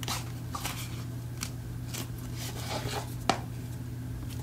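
Hands handling a book-cover purse of hardback boards and fabric: light rustles and taps as it is turned over, with one sharper click a little after three seconds, over a steady low hum.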